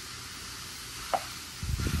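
Ground beef sizzling in a hot electric skillet while a metal spoon breaks it up and stirs it. There is one sharp clink a little past halfway, then a few low bumps near the end.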